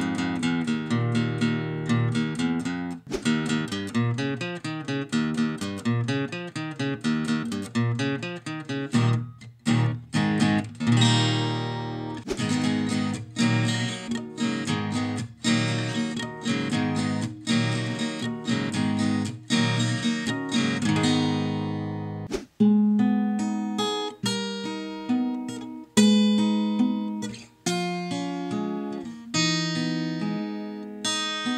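Ibanez steel-string acoustic-electric guitar played acoustically into a microphone, a continuous run of picked notes and chords. About two-thirds of the way through, the playing changes to sparser, more separated chords.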